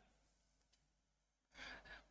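Near silence, then near the end a short, soft intake of breath by a man at a close microphone.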